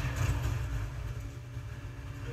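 A fire sound effect from the anime's soundtrack: a steady low rumble with a hiss above it.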